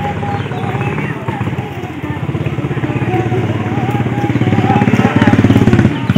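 Women singing a Jeng Bihu song, long wavering held notes, over a fast rhythmic pulsing beat that grows louder in the last couple of seconds.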